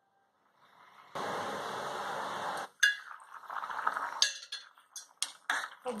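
Pot of macaroni boiling in water: a steady bubbling hiss for about a second and a half. Then a metal spoon stirs the boiling macaroni and clinks against the metal pot several times.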